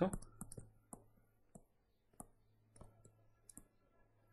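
Stylus on a tablet surface while handwriting, making light, irregular clicks and taps over a faint steady low hum.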